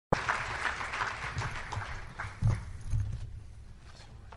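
Audience applause, dense clapping that dies away about three seconds in, with a low thump about halfway through.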